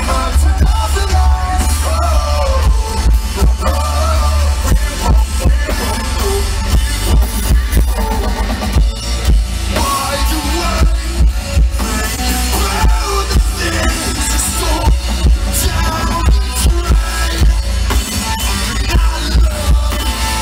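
A rock band playing live through a loud PA: drums, bass guitar and a male lead singer who sings in stretches, with a very heavy low end throughout.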